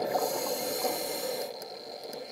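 Scuba regulator hissing as the diver breathes in, for about a second and a half, while the bubbling of the last exhalation fades beneath it.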